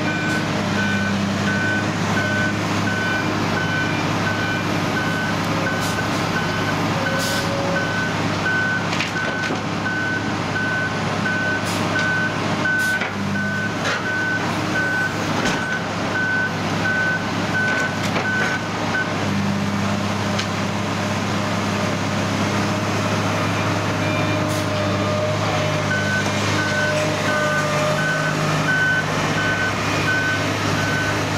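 Heavy diesel plant running steadily: a hydraulic excavator working a rock grab, its engine note shifting with the hydraulic load. Over it, a reversing-type warning alarm gives a steady series of beeps, which stop for several seconds past the middle and then start again. There are a few sharp knocks of metal and stone as the grab handles the rocks.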